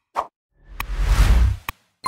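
Sound effects of an animated like-and-subscribe button: a short pop, then a whoosh that swells and fades over about a second with a low rumble under it, with a sharp mouse-style click partway through and another as it ends.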